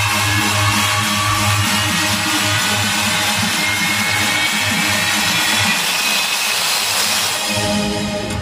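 Loud electronic dance music with a heavy, pulsing bass beat, played through a truck-mounted DJ speaker stack under sound test; the deepest bass drops away near the end.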